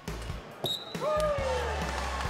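Wrestling referee slapping the mat to signal a pin, then a short high whistle blast about half a second in, over background music. A single falling call follows from about a second in.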